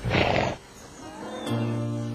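A horse gives one short snort at the start, a loud noisy burst lasting about half a second. Soft background music with held notes underneath swells about one and a half seconds in.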